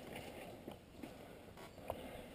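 Mountain bike rolling down a dirt singletrack, heard faintly: a low rumble of tyres on dirt with a few light clicks and rattles from the bike, the clearest one near the end.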